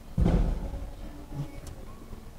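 A short low thump and rumble about a quarter second in, then faint background noise.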